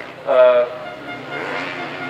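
Dirt bike engines idling with a steady low hum. A man's voice cuts in briefly about half a second in, and is the loudest sound.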